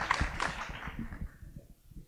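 Audience applause dying away, the scattered claps thinning out to near quiet about halfway through.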